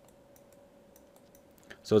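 Faint, sparse ticks of a stylus tapping and dragging on a drawing tablet as a word is handwritten, over a faint steady hum.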